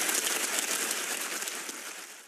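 Studio audience applauding, the clapping fading out near the end.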